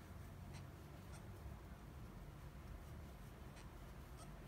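Faint scratching of a crochet hook pulling yarn through stitches, with a few soft ticks scattered through.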